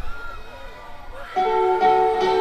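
Live rock band at a concert: after a quieter stretch with voices, the band comes in loudly about a second and a half in, with electric guitar chords ringing out.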